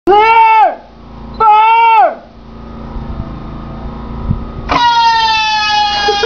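Javelin anti-tank missile firing: two loud, level-pitched half-second tones, then near the end a sudden loud whine from the missile's flight motor that falls steadily in pitch as the missile flies away.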